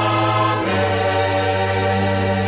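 A choir singing a scripture song in long, held chords. The harmony moves to a new chord about two-thirds of a second in.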